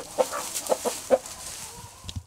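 Chickens clucking: a handful of short clucks, the loudest a little after a second in.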